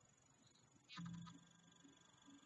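Near silence: room tone, with one brief faint low hum about a second in.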